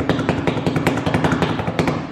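Rapid drumroll of hands slapping on a kitchen countertop, many irregular strikes a second, stopping abruptly at the end.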